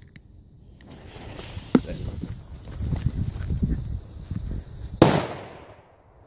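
Footsteps rustling through dry leaves. About five seconds in comes a single loud bang from a Weco Kanonenschlag firecracker with 4.5 g net explosive mass, which fades away over about a second.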